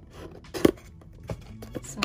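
Scissors cutting into the wrapping of a small cardboard box: one sharp snip about two-thirds of a second in, then a few lighter clicks as the box is handled.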